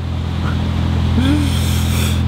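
A trawler's diesel engine running steadily underway, a continuous low drone, with a rush of hiss building near the end.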